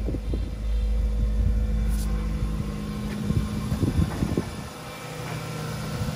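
A 2004 Mazda3's 1.6-litre four-cylinder engine running at a raised idle just after a cold start, with a few light knocks of handling. The steady low running sound grows quieter about halfway through.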